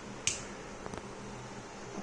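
A small rocker switch clicked once about a quarter second in, followed by a fainter tick about a second in, over a faint low steady hum.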